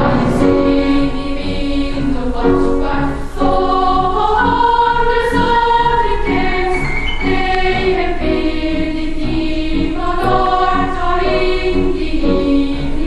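Children's choir singing, with held notes and no break in the sound.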